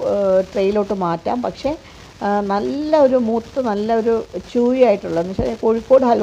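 A woman's voice talking over faint sizzling and the scrape of a metal spoon stirring thick wheat halwa in a clay pot.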